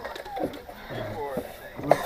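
Indistinct voices of people talking, with a low hum-like vocal sound about halfway through and a sharp knock near the end.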